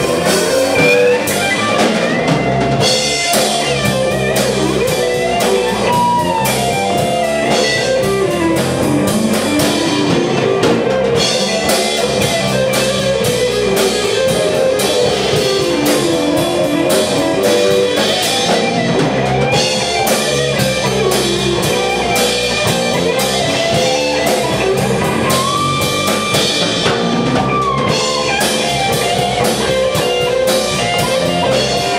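Live band playing instrumental rock: electric guitar lines over electric bass and a drum kit, with a few long, bending held notes.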